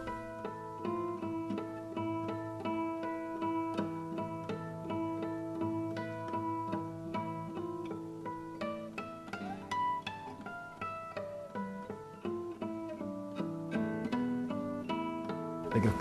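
Classical guitar playing a fingerpicked piece: a quick line of single plucked notes over held bass notes.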